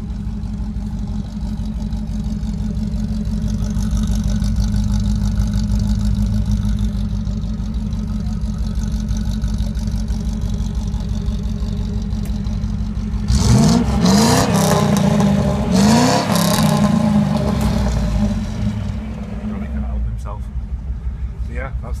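Land Rover ambulance engine, currently running on LPG, idling steadily, then revved up twice about 13 to 17 seconds in before settling back to idle.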